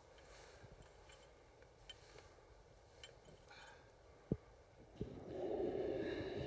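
Faint background noise with two short sharp knocks, a little after four seconds and again at five seconds in. Near the end a steadier, louder hum sets in.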